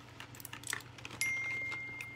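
Faint clicks and clinks of small makeup items being moved about while rummaging. A little over a second in, a high single-pitched ding starts sharply and holds, slowly fading.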